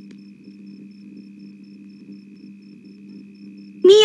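Steady low electrical hum with a faint thin high whine in the soundtrack; a voice breaks in just before the end.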